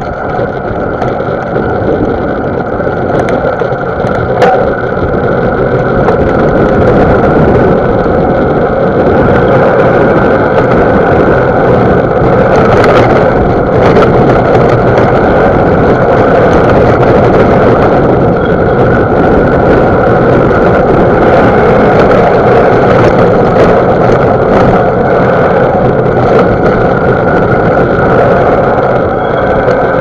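Mountain bike rolling along a dry dirt track, heard through the rider's camera: a loud, steady rumble of wind on the microphone and tyres on the ground, with a few sharp knocks from the rough surface, about four seconds in and near the middle.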